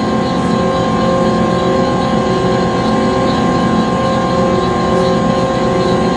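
Conveyor belt machinery running steadily: a continuous whine of several held tones over a low, even rumble.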